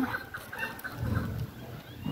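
Chukar partridges giving soft, short clucking calls, with a low rumble about a second in.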